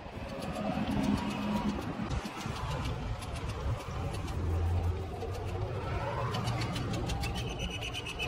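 Outdoor ambience dominated by a steady low engine rumble from a vehicle, with a few short bird calls over it.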